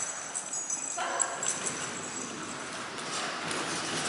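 Quick, light footfalls and small clicks of a dog and its handler running across a padded agility floor.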